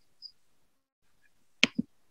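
Two quick clicks close to the microphone, a sharp one followed about a fifth of a second later by a duller, lower one, near the end of an otherwise silent pause.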